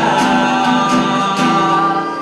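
Several voices singing together, holding one long note over a strummed acoustic guitar.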